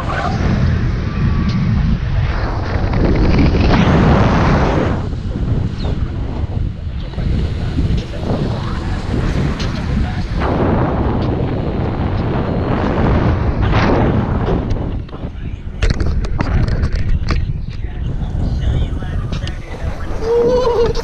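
Wind buffeting the microphone of a camera in tandem paraglider flight: a loud, rough, steady rush heaviest in the low range, with a few sharp knocks near the end.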